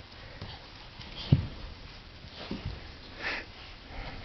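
Quiet sniffing breaths and two soft, low thumps, about a second apart, as a toddler gets down onto her knees and hands at a carpeted stair.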